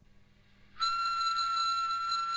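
A recording of a single whistled tone of about one kilohertz, played back from a handheld recorder held up to the microphone. It starts just under a second in and holds one steady pitch.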